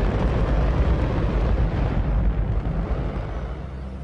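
Hydrogen–oxygen rocket engine firing on a static test stand: a continuous, very loud roar with heavy low rumble, thinning out slightly near the end.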